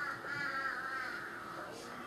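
A small child's high, wavering cry, fading out about halfway through.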